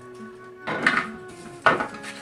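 Two short handling noises from a foam board piece and a plastic ruler being lifted and moved on a hard floor, one about a second in and a sharper one near the end, over steady background music.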